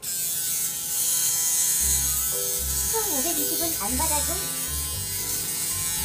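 An electric shaver switches on abruptly and runs with a steady buzz as it is worked over the chin and neck.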